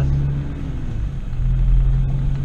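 Car engine and road noise heard from inside the cabin while driving, a steady low drone. The engine note drops away briefly about half a second in and picks up again a little after one second.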